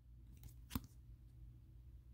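Near silence with one faint, brief click about three-quarters of a second in: a trading card in a rigid plastic toploader handled in the fingers.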